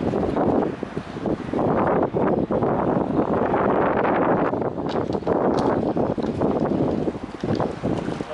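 Gusty wind buffeting the microphone, loud and uneven, over the low running of an EMD J-26 diesel locomotive pulling a train slowly out of the yard.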